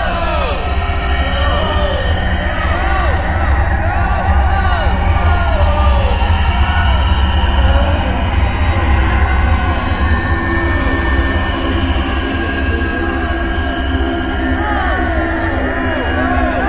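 Electronic concert music: a steady deep drone under many overlapping short arching glides in the middle range, a babble of processed voice-like sounds.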